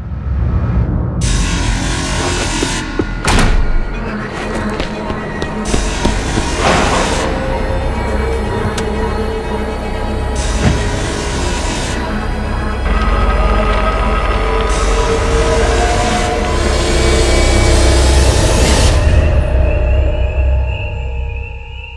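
Horror film score: dense, sustained eerie music over a low rumble, struck by several sudden hits, building louder toward the end with a rising sweep.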